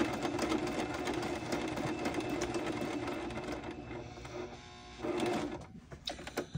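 A Singer electric sewing machine stitching fabric, its motor running steadily. It slows and drops away about four seconds in, then runs again in a short burst near the end and stops.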